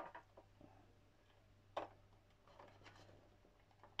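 Mostly near silence, broken by a few faint clicks and light taps of hard plastic model parts and a small screwdriver being handled, the sharpest click a little under two seconds in.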